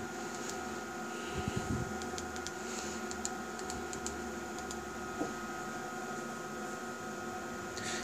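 A few soft knocks and light clicks as buttons on the calibrator's front-panel keypad are pressed, mostly in the first half, over a steady hum with a faint high tone from the running bench instruments.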